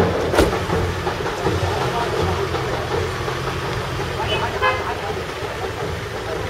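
A car engine idling with a steady low hum, under the voices of a crowd talking; a sharp click about half a second in.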